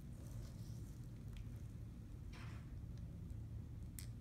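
Quiet small-room tone with a steady low hum, a brief soft hiss about halfway through and a sharp click at the very end.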